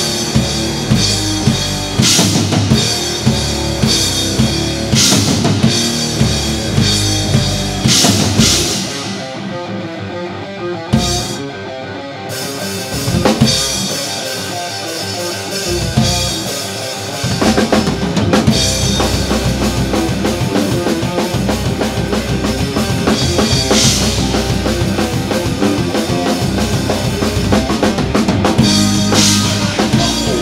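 Rock band playing live, led by a Yamaha drum kit with bass drum and snare, with electric guitars. The music drops to a quieter, thinner passage about nine seconds in, and the full band comes back in about seventeen seconds in.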